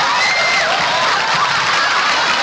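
Sitcom studio audience laughing and cheering in a loud, dense crowd sound, with one high voice held briefly above it near the start.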